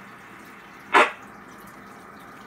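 Steady hiss from an RTL-SDR receiver tuned to a two-meter amateur radio repeater, with one short, sharp burst of noise about a second in.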